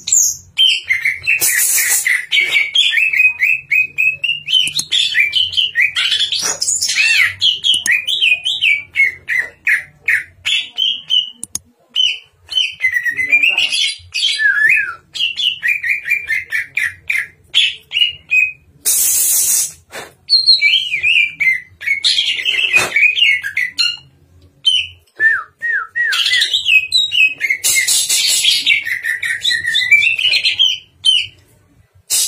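Caged cucak ijo (green leafbird) singing continuously: a fast, varied run of chirping and whistled phrases rich in mimicked snatches. The song pauses briefly twice and is broken by a few short harsh, noisy bursts.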